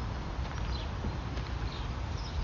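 Outdoor ambience: a steady low rumble with faint short high bird chirps now and then.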